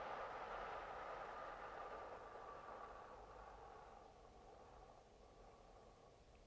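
A long, slow exhale through the mouth, a soft breathy hiss that fades gradually over about five seconds: the eight-count out-breath of a paced breathing exercise.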